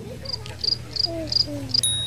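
Cricket chirping: five short high chirps, evenly spaced about three a second, the stock 'crickets' effect for an awkward silence. A thin steady high tone comes in near the end.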